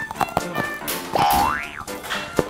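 Background music with a cartoon comedy sound effect about midway: a pitch glide that rises quickly and then drops away.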